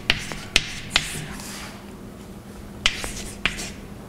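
Chalk tapping and scratching on a blackboard as equations are written: a quick run of sharp taps in the first second, then two more about three seconds in, with a light scrape after some of them.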